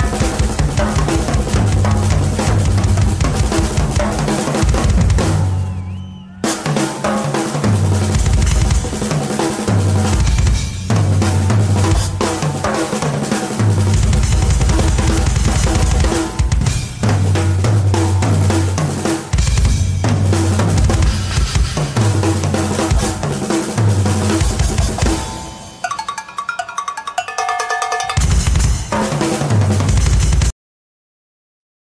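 Live rock drum solo on a large multi-drum kit: fast, dense bass drum, snare, tom and cymbal patterns. The playing briefly drops out about six seconds in. Near the end the low drums stop for a sparser passage of pitched cowbell hits before the full kit comes back in.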